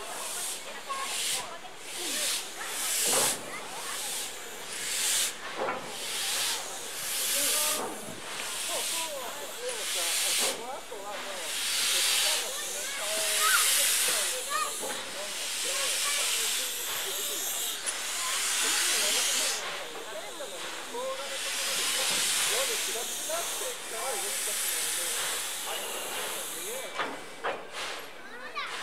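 C11 190 tank steam locomotive hissing steam as it creeps onto a turntable: bursts about a second apart at first, then longer hisses.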